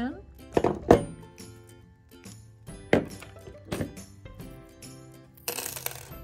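Background music, over which small metal keychain parts and steel pliers click and clink against a wooden tabletop: four or five separate sharp knocks, then a short clatter near the end.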